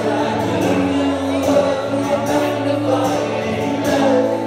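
Live band playing a song: a male voice singing over acoustic guitar and held keyboard chords.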